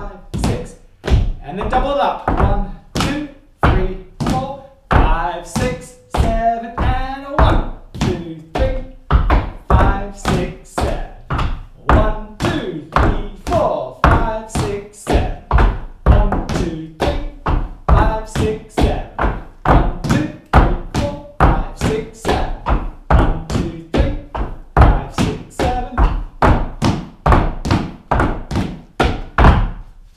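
Dancers' shoes tapping on a wooden floor in a steady rhythm, a little over two strikes a second, with music playing along.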